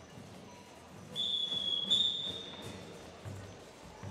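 A shrill whistle blast about a second and a half long, starting about a second in, holding one high pitch that steps up slightly in its middle: a band leader's whistle signal over the low murmur of the gym.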